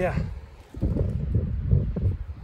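Wind buffeting the microphone of a phone camera on a moving ebike: a rough low rumble that drops away briefly just under a second in, then comes back.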